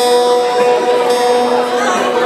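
Electric guitar notes ringing sustained, two tones held together for about a second and a half before fading, with voices from the crowd beneath.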